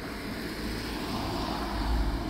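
A small hatchback car driving past on the street, its engine and tyre noise growing louder as it approaches.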